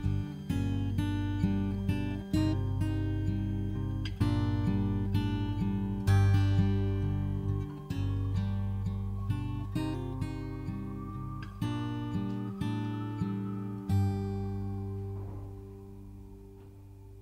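Acoustic guitar strumming chords in a steady rhythm, ending on a last chord about two seconds before the end that rings out and fades.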